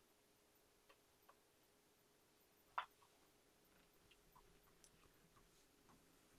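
Near silence with a few faint ticks of a printed paper sheet being creased and pressed flat by hand, the clearest about three seconds in.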